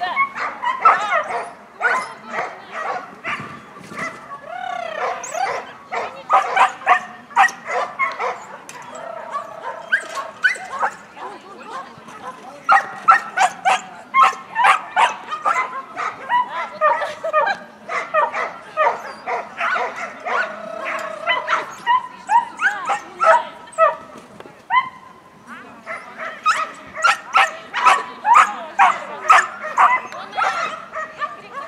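Dogs barking and yipping in rapid, near-continuous volleys of several barks a second, with a few short high yelps and two brief lulls.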